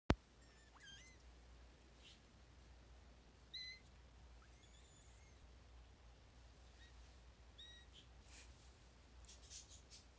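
Four-week-old Maine Coon kittens giving faint, high-pitched mews: several short calls spread through, the loudest about three and a half seconds in. A sharp click at the very start, and soft rustling near the end.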